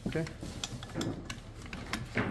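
A few light metal clicks and taps as a chuck key is handled against the keyed chuck of a DeWalt joist driller, being fitted to tighten the hole saw arbor.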